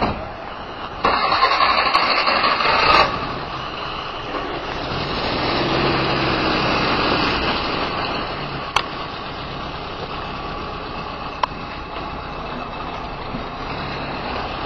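A truck engine running steadily, with a louder rush of noise for about two seconds shortly after the start and a couple of brief clicks.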